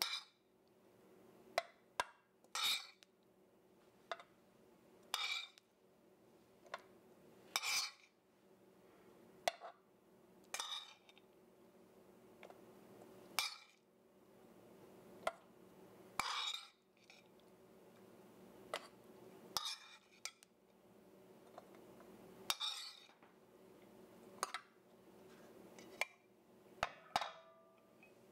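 A spoon clinking and scraping against a stainless skillet and a metal muffin tin as sautéed vegetables are scooped out and dropped into the tin's cups. There is a sharp clink or short scrape every second or two.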